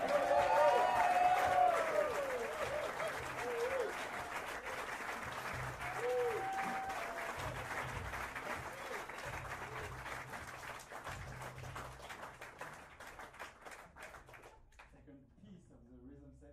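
Audience applauding and cheering with whoops, loud at first and gradually dying away toward the end.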